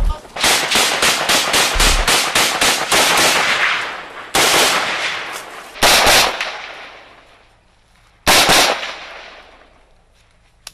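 Rifle gunfire: a rapid string of shots, about six a second, for the first three seconds or so. Then three more short bursts follow, each trailing off in a long echo.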